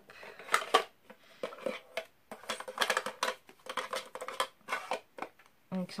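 A small cosmetics box and its plastic packaging being handled and opened: a run of crinkles, clicks and taps, in two bursts, about half a second in and again through the middle.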